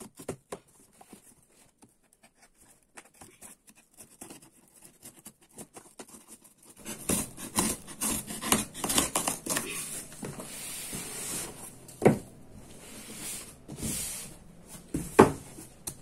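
Hands prying and tearing open the heavily glued flaps of a corrugated cardboard box: faint scratching and small clicks at first, then louder tearing and rustling of cardboard from about seven seconds in, with two sharp cracks near the end as the glued joints give way.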